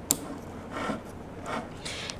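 A sharp click as an RJ45 Ethernet plug latches into the port of a tubular PoE extender, then soft rubbing and handling noises of plastic parts on a wooden desk.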